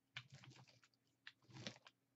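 Faint, irregular crackling of a rubber brayer rolling over deli paper laid on wet Mod Podge, pressing the glued layers down.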